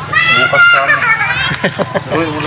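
A child's high-pitched voice calling out, its pitch gliding up, over a steady low hum, with a few short clicks near the end.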